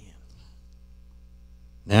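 Steady low electrical mains hum, several constant tones, under a pause in the talk, with a faint breath just after the start.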